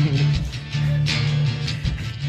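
Guitar strumming chords over a steady low bass note, the chords struck in an uneven rhythm.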